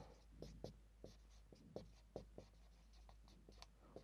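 Marker pen writing on a whiteboard: a faint, irregular series of short strokes and taps as the letters are written.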